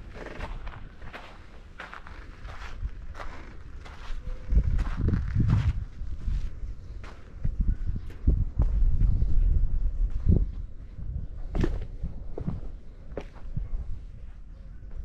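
Footsteps on dry dirt ground at a steady walking pace, about two steps a second. A low rumble on the microphone comes in twice, about four seconds in and again from about eight to ten seconds, and is louder than the steps.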